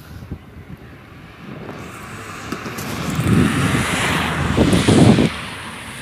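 Wind gusting over the phone's microphone, building from about two seconds in to heavy low buffeting that cuts off suddenly a little after five seconds.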